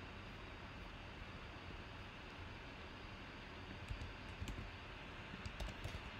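Faint computer keyboard typing and mouse clicks, a few scattered keystrokes starting about four seconds in, over a steady low hiss.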